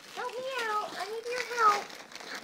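A toddler's high-pitched wordless vocalizing: two drawn-out sounds in a row, each gliding up and then down in pitch.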